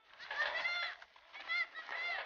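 High-pitched shouts or calls from people in the crowd, in two bursts of about a second and half a second.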